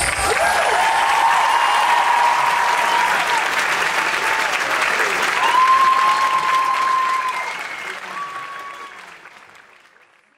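Hall audience applauding and cheering, with several long high cheers over the clapping. The applause fades out over the last two or three seconds.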